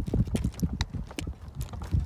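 Wheelchair rolling over pavement: a low rumble with many irregular knocks and rattles, several a second.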